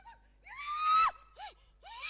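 A woman crying out during a deliverance prayer: one long, high scream about half a second in, followed by short gasping cries that rise and fall in pitch.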